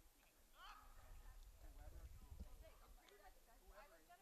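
Faint, distant shouts and calls of soccer players across an open field, over a low rumble that swells for a second or two in the middle.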